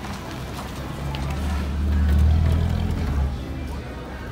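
A car driving slowly past close by over cobblestones, its low engine rumble swelling to a peak about two seconds in and then fading away.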